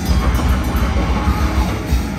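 A grindcore band playing loud live: distorted electric guitar and bass over a drum kit, dense and unbroken.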